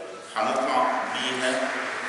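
Only speech: a man talking, his voice dropping away briefly and picking up again about a third of a second in.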